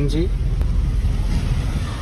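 Car moving slowly, a steady low rumble of engine and road noise.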